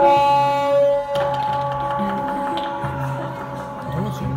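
Live acoustic band music with hang drums and n'goni over a repeating low pulse; a bright, overtone-rich note starts right at the beginning and rings for about a second.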